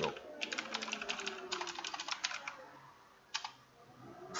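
Computer keyboard typing: two quick runs of keystrokes over the first two and a half seconds, then a single keystroke a little past three seconds.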